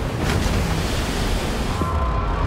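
Film sound design of heavy rushing, surging sea water and waves, with a strong deep rumble underneath.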